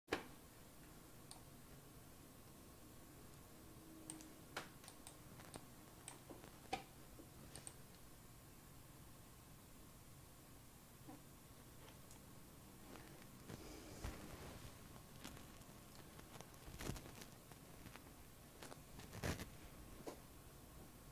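Near silence: room tone with a faint steady hum and scattered faint clicks and taps, busier and a little louder in the last few seconds.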